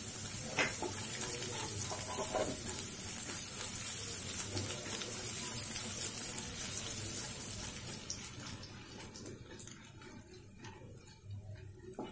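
A tempering of whole spices sizzling in hot oil in a kadhai, with a wooden spatula scraping the pan as it is stirred. The sizzle dies down about eight seconds in.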